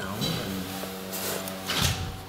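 Elevator machinery starting up after the call button is pressed: a steady hum of several tones sets in just after the start and holds, with a short thump near the end.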